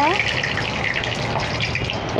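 Whole dried red chillies and bay leaves sizzling steadily in hot oil in a kadai over a high flame.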